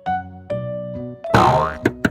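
Cheerful children's background music in short separate notes, with a loud cartoon 'boing' sound effect about two-thirds of the way in, followed by a couple of sharp clicks near the end.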